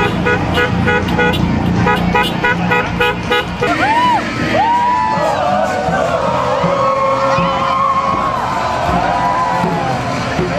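A vehicle horn tooting in a quick, even run of short beeps for about the first three and a half seconds, then a marching crowd's raised voices calling and chanting with sliding pitch.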